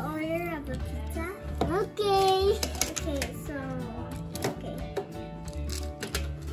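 A young child's voice over background music with a low bass line; one note is held about two seconds in.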